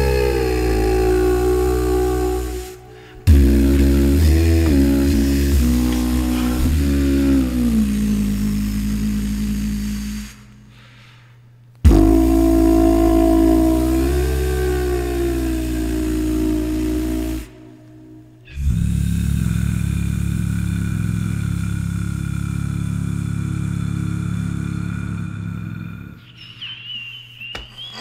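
Beatbox music: layered vocal chords that glide up and down over a deep, sustained bass. The sound cuts out abruptly three times and dies away near the end.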